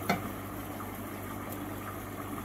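Steady running water with a low, constant hum, from a garden koi pond's pump and filter circulating the water.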